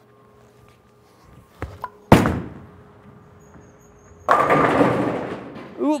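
A urethane bowling ball, freshly wiped of oil, lands on the wooden lane with a sharp thud about two seconds in after a couple of soft approach steps, then rolls down the lane. About two seconds later it hits the tenpins, which crash and scatter for over a second.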